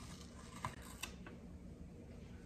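Faint handling of an ice cream carton's lid and cover as it is pulled off, with two small clicks a little under half a second apart, over a low room hum.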